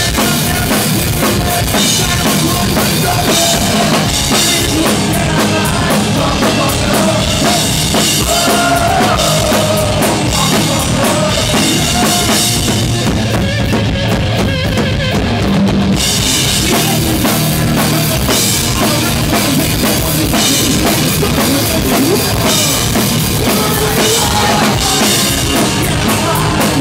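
Punk rock band playing live and loud, drum kit prominent over bass and guitars, with a singer's voice coming through in places.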